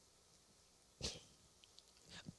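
Near silence: room tone, with one short, faint sound about a second in.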